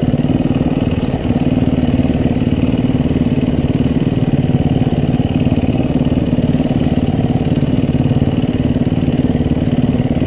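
Dirt bike engine running steadily while being ridden, its note holding at an even, low speed with little revving. There is a brief drop in level about a second in.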